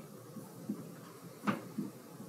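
A single sharp knock about one and a half seconds in, with a couple of fainter knocks before and after it, over quiet room noise.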